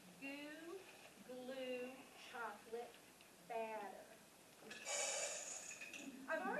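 A woman's voice in short phrases with no clear words, then about a second of rustling near the end.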